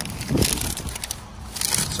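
Packaging being handled: a cardboard sneaker box opened and the tissue paper and plastic bags around it rustling and crinkling. The rustles are irregular, louder about half a second in and again near the end.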